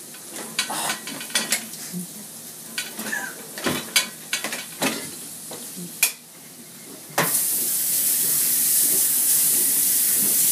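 Dishes and cutlery clattering as a dishwasher is rummaged through. About seven seconds in, a kitchen tap is turned on and water runs steadily and loudly into a stainless steel sink.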